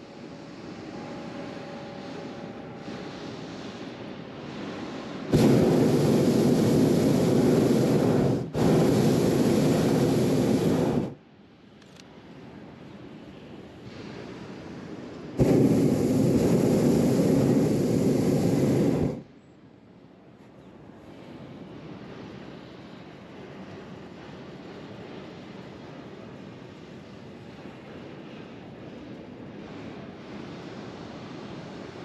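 Hot air balloon's propane burner firing in three blasts of a few seconds each, a loud rushing noise that starts and stops abruptly. The first two blasts come close together about five seconds in and the third comes at about fifteen seconds. A much quieter steady hiss fills the gaps between them.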